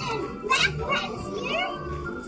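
A young child's voice making short, high vocal sounds, with a louder burst about half a second in, over steady background music.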